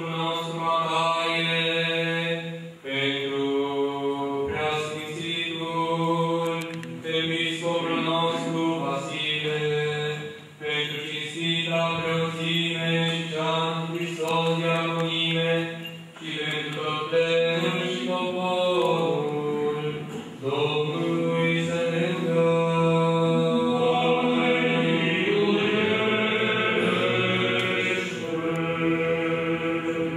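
Eastern Orthodox liturgical chant: voices singing a melody over a low held drone note, in phrases broken by brief pauses.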